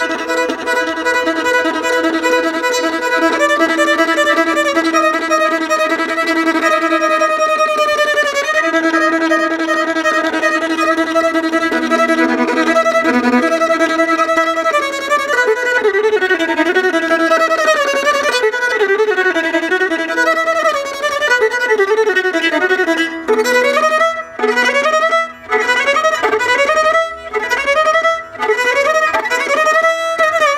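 Solo violin played in Indian classical style. Long held notes are joined by slow slides up and down between pitches (meend). Near the end comes a quick run of short rising slides, each one broken off briefly.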